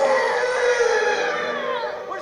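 A baby wailing loudly in one long cry that wavers and falls in pitch near the end, from an animated film's soundtrack heard through a TV's speaker.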